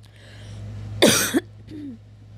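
A person coughs once, loudly, about a second in, followed by a short low voiced sound, over a steady low hum.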